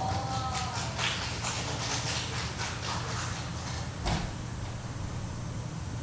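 Steady low hum of a hall, with a run of small clicks and rustles over the first few seconds, then a single sharp knock about four seconds in.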